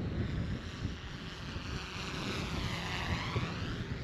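DJI Mavic 3T quadcopter flying in Sport Mode, its high propeller whine swelling and sweeping in pitch as it passes, loudest around three seconds in. Wind buffets the microphone underneath.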